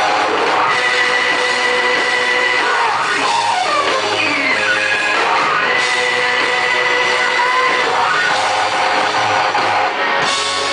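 Rock-and-roll band playing live and loud, with electric guitar, drums and piano. Held high notes and sliding notes ride over the band.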